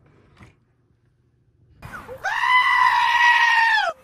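A goat letting out one long, loud bleat about two seconds in, held for about a second and a half and cutting off suddenly.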